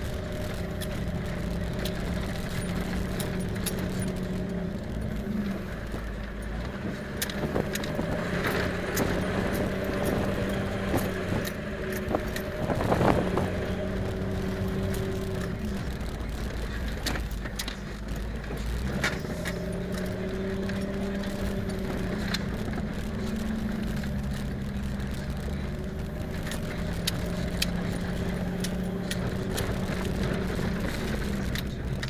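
Off-road vehicle's engine heard from inside the cab while driving a rutted dirt road, its note stepping up and down with the throttle, over a constant clatter of rattles and knocks from the body bouncing. A louder clunk about halfway through.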